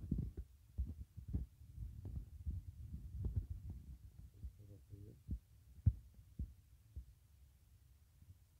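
Irregular dull thumps and light knocks of handling noise on a tablet's microphone as fingers tap and drag on its touchscreen, densest in the first half and thinning out toward the end.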